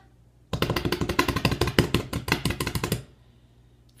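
Hands drumming rapidly on a tabletop as a drumroll: a fast run of strokes, about ten a second, starting about half a second in and stopping after about two and a half seconds.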